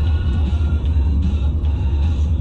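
Steady low road and engine rumble inside a car cabin at highway speed, with music playing under it.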